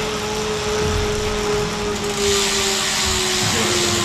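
Indoor bike trainer under a time-trial bike, whirring steadily with a single high whine while the rider pedals, over a rushing noise that gets louder about two seconds in. Near the end the whine starts to drop in pitch as the pedalling eases off.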